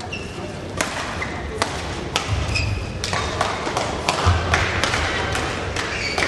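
Badminton rally: a string of sharp racket hits on the shuttlecock, about one every half second, with thudding footsteps on the court and a few short high squeaks.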